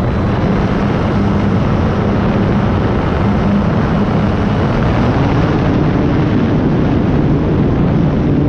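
E-flite Night Timber X in flight, recorded onboard: the electric motor and propeller hum under heavy wind rush on the microphone. The hum steps up in pitch about five seconds in and again near the end as the motor speeds up.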